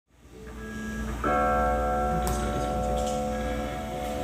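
Live psychedelic rock band starting a song: sustained electric guitar notes fade in, then a fuller chord swells in about a second in and rings out steadily over a low hum. A couple of faint cymbal touches sound in the second half.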